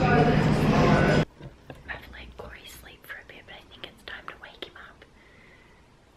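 Busy cafe hubbub with a steady low hum that cuts off suddenly about a second in, followed by a woman whispering in a quiet room.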